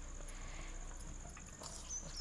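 A quiet pause: a faint, steady, high-pitched trill over a low hum.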